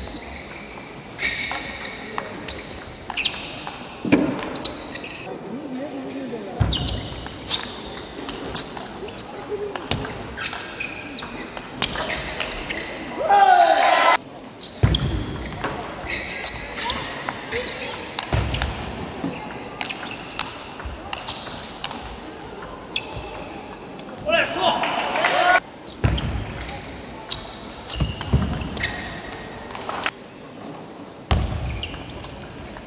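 Table tennis rallies: the plastic ball clicking off the bats and the table in quick runs, in a large echoing hall. Two loud shouts of about a second each, about 13 seconds in and again about 25 seconds in.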